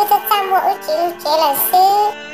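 A very high-pitched voice singing with gliding and held notes over background music with steady sustained tones.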